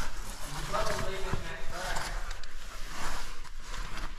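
Caving gear, clothing and rope rustling and scraping against the rock wall during a rappel down a pit. A faint, distant voice is heard about a second in.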